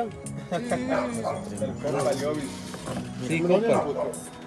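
Background music with voices talking over it, the loudest a rising call about three and a half seconds in.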